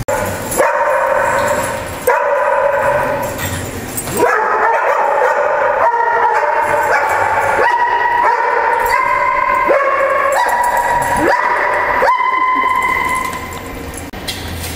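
A dog vocalising in long, high, wavering whines and yips that shift up and down in pitch, with short breaks about two and four seconds in, trailing off near the end.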